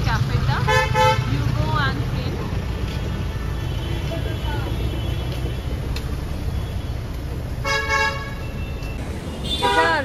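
Street traffic rumbling steadily, with two short car-horn honks, one about a second in and another near the end.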